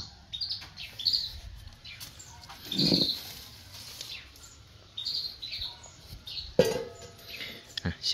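Small birds chirping: short high chirps come every second or so. There is a louder, brief lower sound about three seconds in and a sharp one near seven seconds.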